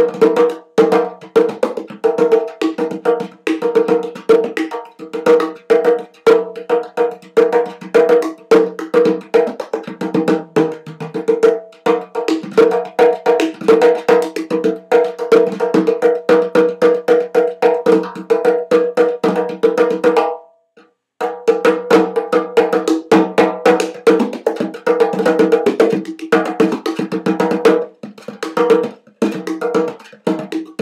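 A hand-made ceramic three-headed darbuka (doumbek) with stingray-skin heads, played with the hands in fast, dense strokes that ring with a clear pitch. The playing stops for a moment about two-thirds of the way through, then starts again.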